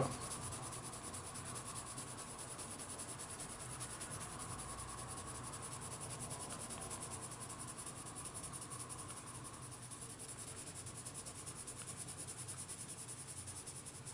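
Coloured pencil shading lightly on paper in quick, even back-and-forth strokes, a soft, steady scratching rhythm.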